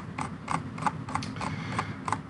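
A quick run of light clicks from the computer's controls, about four a second and slightly uneven, as the terminal output is scrolled back up.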